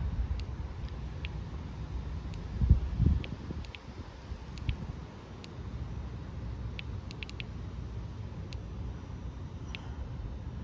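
Low, steady outdoor rumble with scattered faint clicks, and two louder thumps about three seconds in.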